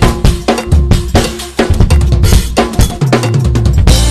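Acoustic drum kit played in a fast, busy groove with dense snare, tom, kick and cymbal strikes, over a backing track with a bass line that shifts pitch.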